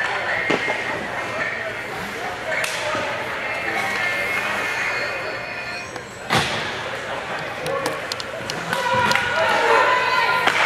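Echoing voices of players and spectators in an indoor ice rink during a stoppage in play. There is one loud knock about six seconds in and a few light clicks after it.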